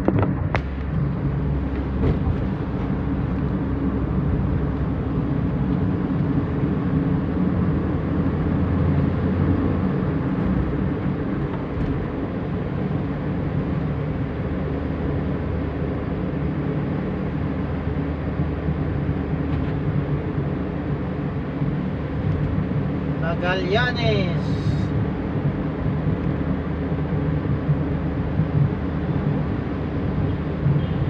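Steady engine and tyre noise of a moving car heard from inside the cabin, a constant low rumble at cruising speed with no gear changes or horns standing out.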